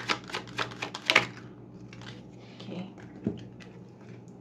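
A baralho cigano (Lenormand) card deck being shuffled by hand: a quick run of card clicks in the first second or so, then softer sounds of cards being laid down on a table, with one louder tap late on.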